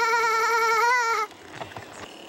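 A young girl's voice holding one long, high vocal note with a slight waver, breaking off a little over a second in.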